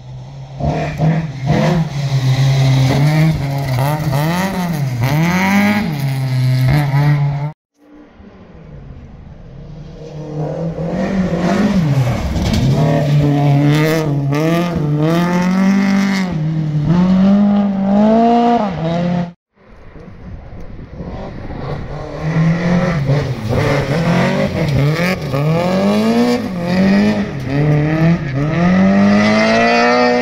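Rally cars at full throttle on a gravel special stage, the engine note climbing and dropping again and again with gear changes and lifts as each car passes. The sound cuts off abruptly twice, about a quarter and two-thirds of the way in, between separate passes.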